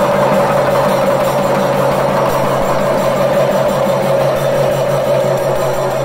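An ensemble of chenda drums played with sticks in a fast, continuous, unbroken roll, accompanying a Kerala temple dance, over a steady sustained tone.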